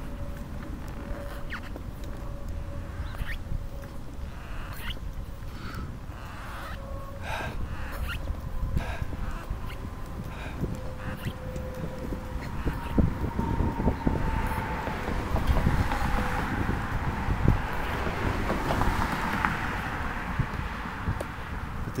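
Wheelchair rolling along a concrete sidewalk: a steady low rumble from the wheels with scattered sharp clicks and knocks. A broad hiss swells and fades in the second half.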